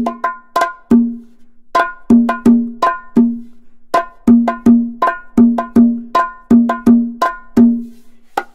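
Background music: a percussion-only rhythm of sharp, pitched strikes, about three a second in short phrases, each leaving a low ringing note with brighter ringing overtones.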